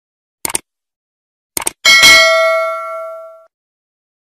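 Subscribe-button animation sound effect: two short clicks, about half a second and a second and a half in, then a bright notification-bell ding that rings out and fades over about a second and a half.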